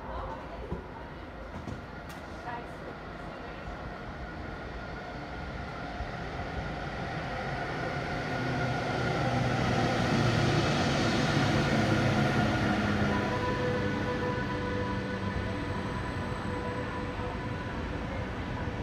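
ÖBB Nightjet passenger train rolling into the platform, its running noise swelling to a peak about two thirds of the way in and then easing off as the coaches go by. Thin steady high tones sound over it in the last few seconds.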